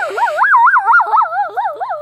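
A girl singing a single held note with a wide, wobbling vibrato, the pitch swinging up and down about four times a second.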